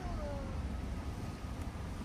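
Steady low rumble of a car driven slowly, heard from inside the cabin.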